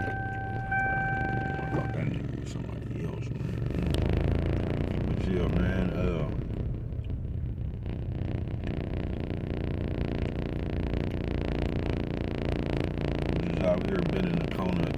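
Low steady rumble inside a vehicle's cab. For the first two seconds a steady electronic beep tone sounds, broken by two brief gaps, then stops.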